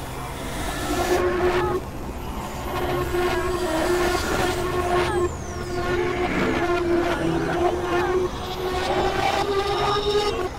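Experimental synthesizer drone: a held mid-pitched tone with stacked overtones over a rumbling noise bed, dipping in loudness about every three seconds and swelling back.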